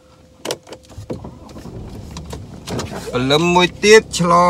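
A few small clicks and knocks inside a car cabin, then a man's voice starts talking about three seconds in.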